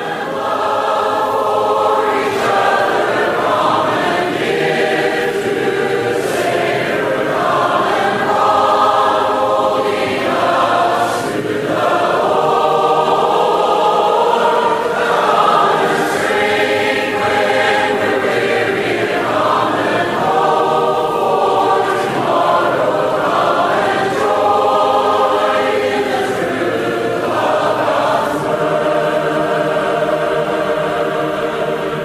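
Choral music: a choir singing, the voices holding long chords that change every two to three seconds.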